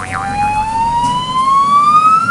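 A whistle-like sound effect: one clear tone gliding slowly and steadily upward in pitch.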